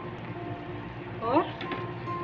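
Background music with soft held notes. A little over a second in, a short rising vocal sound cuts in, the loudest moment.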